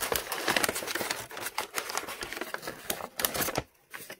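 Brown wrapping paper crinkling and rustling as it is unfolded by hand, a dense run of crackles that stops shortly before the end.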